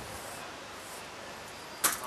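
Steady faint outdoor background hiss, with one short, sharp click near the end.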